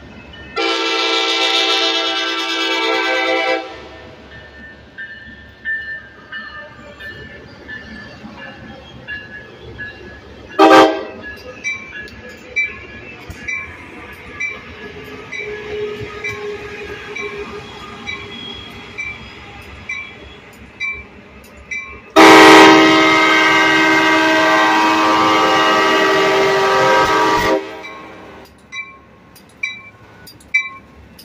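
Train horn sounding two chord blasts, about three seconds and then about five seconds long, the second very loud, as an Amtrak Pacific Surfliner pulls into the station. A bell dings repeatedly between the blasts, with one sharp bang about ten seconds in.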